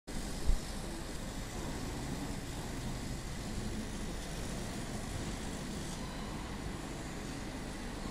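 Laser cutting machine running as its head traces printed shapes on a sheet: a steady machine and fan noise with no change in pitch. A single thump about half a second in.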